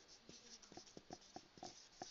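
Faint, irregular light ticks and taps of someone writing, about a dozen in two seconds, against near silence.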